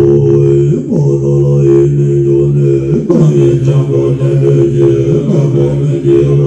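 Tibetan chanting held on a steady low drone, the voices sliding up and back down three times.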